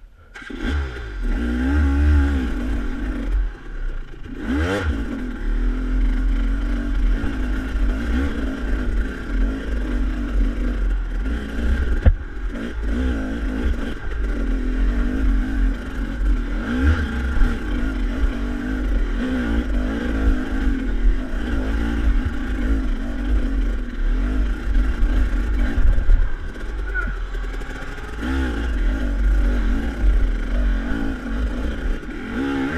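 Engine of a SmartCarb-equipped KTM dirt bike running under load as it climbs single track, its pitch rising and falling constantly with the throttle. A single sharp knock comes about twelve seconds in.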